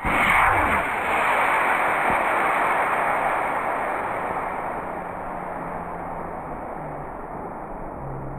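Estes model rocket on a C6-5 motor lifting off: a sudden loud rushing hiss at ignition, then a steady rushing noise that slowly fades over the following seconds.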